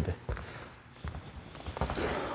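A few soft footsteps on a badminton court floor, heard as short, low knocks spaced out across the moment.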